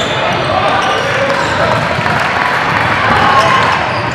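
Sounds of a basketball game in play: a ball bouncing on a wooden court, with players and spectators calling out throughout.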